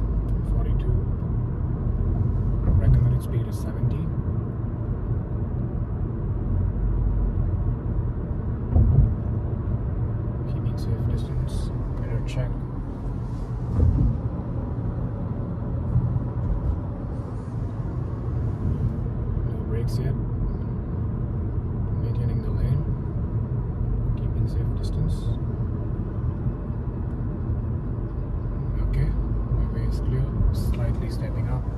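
Steady road and engine rumble inside a Honda car's cabin while it cruises on a highway, with a few brief faint ticks here and there.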